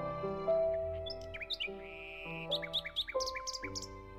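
Bird chirps layered over slow background music: a run of short, quick downward-sliding chirps and a brief buzzy trill in the second half, over long held musical notes.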